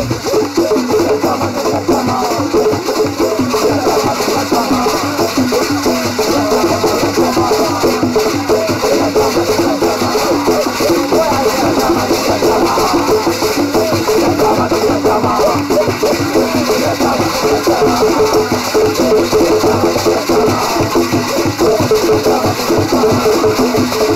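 Music carried by hand drums and percussion in a fast, even rhythm, with a short pitched figure repeating over the beat.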